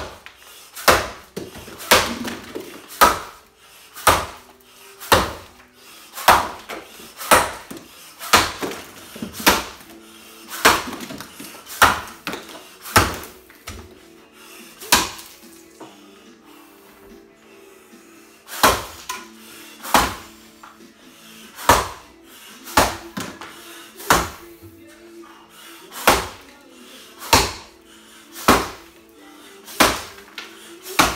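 Axe blows biting into a 14-inch scarlet oak block in an underhand chop, about one sharp chop a second, with a pause of about three seconds midway as the chopper turns to the other side of the block.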